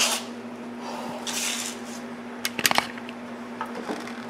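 Light metallic clinks and a scrape from a wiper transmission linkage and motor assembly being handled: a short scrape about a second and a half in, then a quick cluster of sharp clinks, over a steady low background hum.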